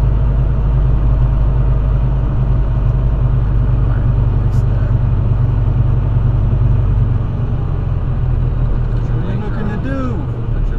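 Semi truck's diesel engine running as the truck moves slowly, heard from inside the cab as a steady low drone that eases off slightly about seven seconds in.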